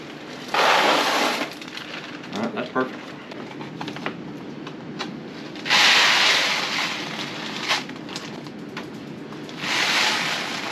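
Dry beans and rice poured from plastic bags into a Mylar food-storage bag: three rushing pours of about a second each, about half a second in, about six seconds in and near the end, with the foil bag crinkling in between.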